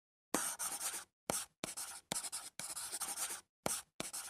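A pen scratching across paper in a series of about six short writing strokes with brief pauses between them, starting about a third of a second in.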